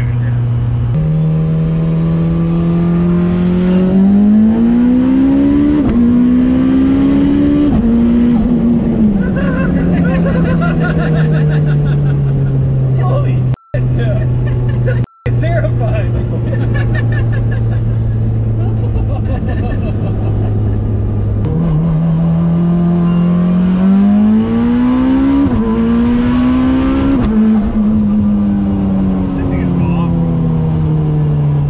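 Heavily boosted Mitsubishi 4G63 four-cylinder turbo engine in a sequential-gearbox Evo IX, heard from inside the cabin. It makes two full-throttle pulls, the revs climbing with two quick upshifts each time, then falls back to a steady cruise between them. Passengers laugh and shout over it.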